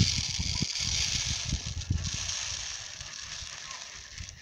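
Cracked barley grain poured from a plastic bowl into another plastic bowl: a steady rushing hiss of falling grain that tapers off over the last couple of seconds, with low bumps underneath.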